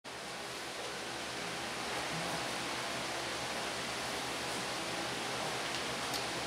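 A steady, even hiss of background noise with no speech.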